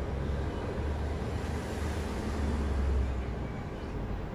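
Mercedes-Benz Citaro G articulated bus's engine idling while the bus stands still, heard from inside the cabin: a steady low drone that swells slightly about three seconds in.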